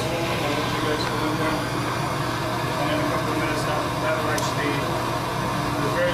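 Steady rushing of a handheld gas torch flame playing on polyisocyanurate foam board, over a low, steady hum.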